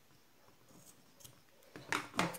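Small scissors cutting off a crochet yarn end: a few faint, short snips around the middle.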